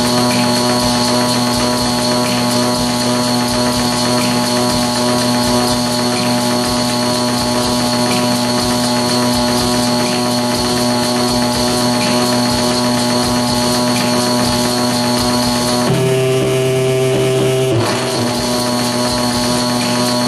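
Loud, harsh electronic noise from circuit-bent hardware: a dense steady drone with several held pitches, which shifts abruptly about sixteen seconds in and again about two seconds later.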